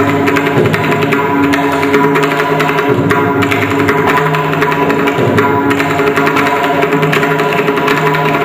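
Mridangam played with rapid, dense hand strokes in a Carnatic rhythm, the drum heads ringing with pitched tones over a steady drone.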